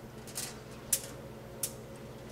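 Cooking oil being poured in a thin stream from a plastic bottle onto a foil-lined sheet pan: three light, sharp ticks over a low steady hum.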